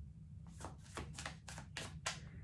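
Tarot cards being shuffled by hand: a quick run of light card flicks and taps starting about half a second in, roughly four a second.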